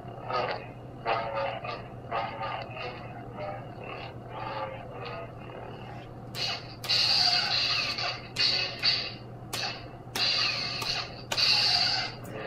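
Lightsaber sound board (Nano-Biscotte, Corellian sound font) played through the hilt's speaker: a steady low hum with a run of swing swooshes as the blade is moved. In the second half come louder bursts with sudden starts, the blade being swung harder.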